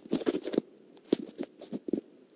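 Scattered faint clicks and crackling rustles picked up through a video-call microphone, irregular and brief, as a presentation slide is being advanced.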